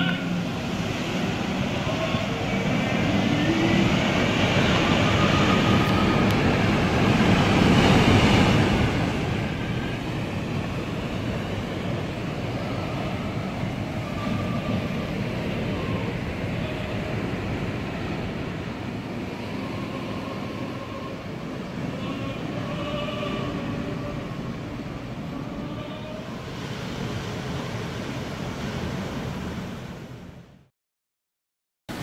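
Atlantic surf breaking over a rocky, boulder-strewn shore: a continuous roar of waves that swells to its loudest about eight seconds in, then settles into a steadier wash.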